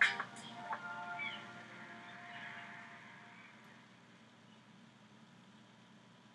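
A house cat meowing briefly about a second in, over faint background music.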